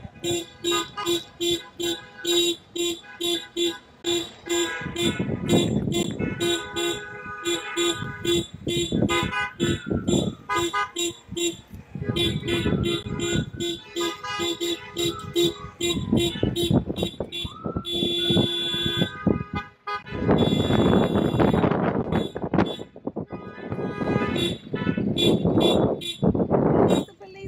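Car horn tooted in a long run of short, evenly spaced beeps, about two to three a second, stopping about three-quarters of the way through. A few seconds of loud rushing noise follow.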